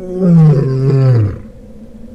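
African lion roaring: one long, loud call, falling in pitch, that lasts a little over a second.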